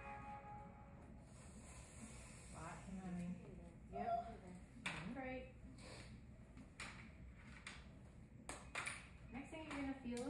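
Quiet, indistinct speech in short bits over a low steady hum, with several sharp clicks in the second half.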